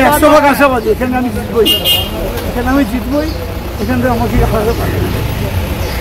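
Men talking in a street crowd over steady traffic noise, with a short high-pitched toot about two seconds in.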